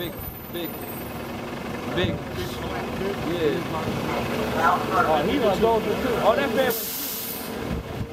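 Indistinct voices talking over street traffic noise, with a short hiss of a bus's air brakes releasing near the end.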